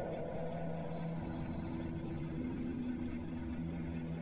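Slow ambient background music of held low droning notes that change every second or two.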